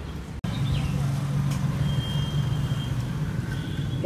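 Steady low hum of a running motor, after a sudden momentary dropout about half a second in.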